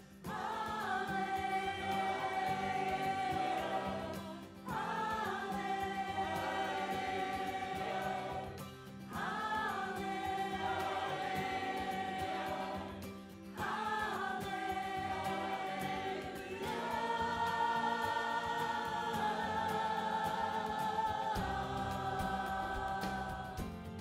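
Mixed choir of men and women singing a slow piece in long held phrases. A brief breath gap comes between phrases, about every four to five seconds.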